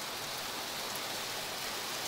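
Steady rain falling on the glass roof of a greenhouse.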